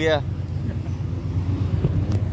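A steady low rumble continues throughout, with the tail of a spoken word at the very start.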